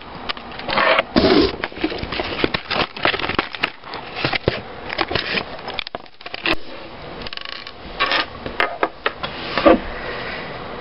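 Clear plastic blister packaging of a fingerboard being handled on a tabletop: irregular crinkles, clicks and short scrapes, with small knocks of the board and package against the table.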